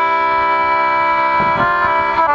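Elise Hayden duet concertina playing a shape-note hymn tune in held chords: one chord sustained, then the upper notes change to a new chord near the end.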